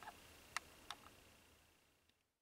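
Near silence: room tone with a few faint clicks in the first second, fading away toward the end.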